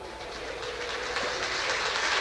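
A steady, noisy sound fading in and growing steadily louder, with a faint steady tone under it.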